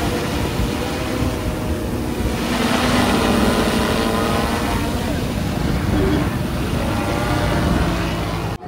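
Multirotor agricultural spraying drone in flight, its rotors giving a steady buzzing drone with a hum of several tones. It grows louder a few seconds in as it passes close, then eases as it moves away.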